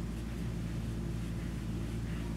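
A steady low-pitched hum with a faint hiss, unchanging throughout.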